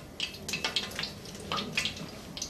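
Cloth kitchen towel rustling and rubbing in irregular soft strokes as washed, still-wet chicken wings are patted dry inside it.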